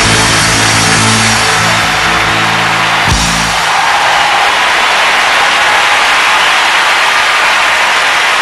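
A rock band's closing chord rings and ends on a final hit about three seconds in. A concert crowd then applauds and cheers.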